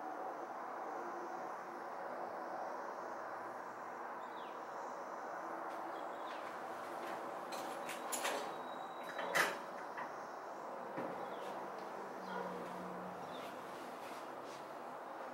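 Steady background hum of a room, with a few clicks and knocks from a door being handled a little past the middle, the sharpest and loudest about two thirds of the way through.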